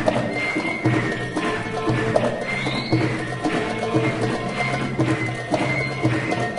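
Live Arab music from a large traditional ensemble of violins, cello, oud, qanun and ney, over a steady, clip-clop-like hand-percussion beat.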